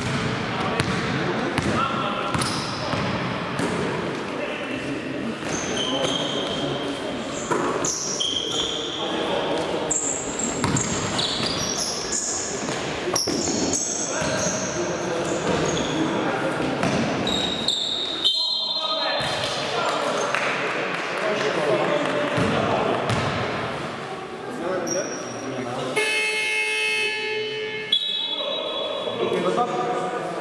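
Indoor basketball game play in a gym hall: a basketball bouncing on the court, sneakers squeaking, and players calling out. Two shrill tones stand out, a short one just before the middle and a longer, fuller one near the end.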